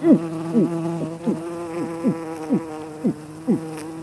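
A flying insect buzzing: a steady buzz with a quick downward swoop in pitch about twice a second.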